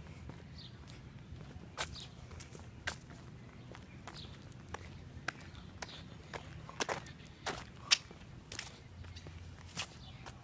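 Footsteps on a concrete sidewalk, irregular short scuffs and taps, the sharpest about eight seconds in, over a steady low hum.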